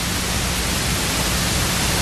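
Steady hiss with a low hum underneath.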